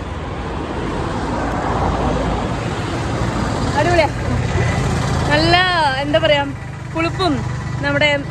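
A motor vehicle passes close by on the road, its engine and tyre noise swelling over the first few seconds. A woman starts talking about halfway through.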